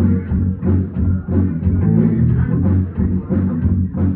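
Live rock band playing loudly through a PA: electric bass guitar, electric guitar and drum kit, with a heavy, dense low end.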